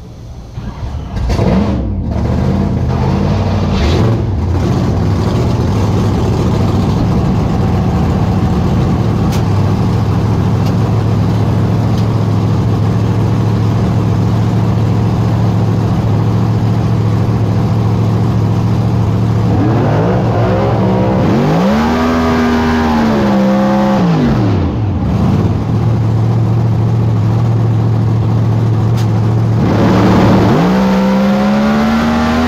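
Pro Mod drag car's V8 engine heard from inside the cockpit, idling loudly and steadily. About two-thirds of the way in it is revved up and back down once, and right at the end the pitch starts to climb again.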